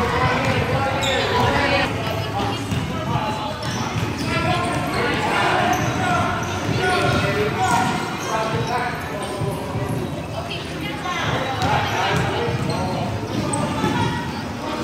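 Basketballs bouncing on a hardwood gym floor during a children's game, with a steady din of kids' voices calling out and the hall's reverberation.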